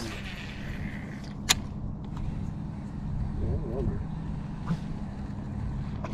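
Electric trolling motor humming steadily, with one sharp click about a second and a half in.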